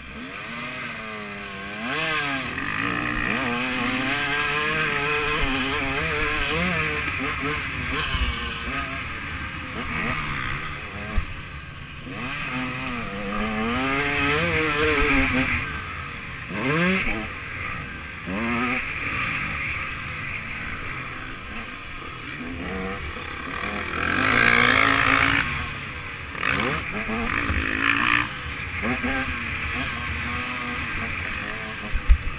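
KTM 150 SX two-stroke motocross engine being ridden hard, its revs rising and falling over and over through throttle and gear changes. A loud rushing noise comes through about three-quarters of the way in.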